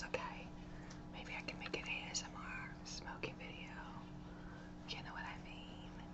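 A woman whispering softly, her words breathy and faint, over a steady low hum.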